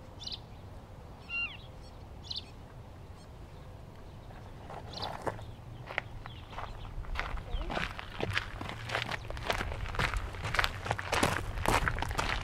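A few bird calls, one of them a short falling call, in the first couple of seconds, then footsteps crunching on a gravel path that start about five seconds in and grow louder and quicker as the walker comes closer.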